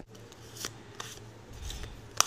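A deck of tarot cards being handled: three faint clicks and rustles of the cards, over a low steady hum.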